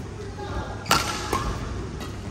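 A badminton racket strikes a shuttlecock with one sharp hit about a second in, followed by a fainter click half a second later, echoing in a large hall.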